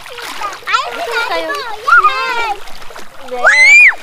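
Children shouting and squealing as they play and splash in shallow sea water, with one loud, high, rising squeal near the end.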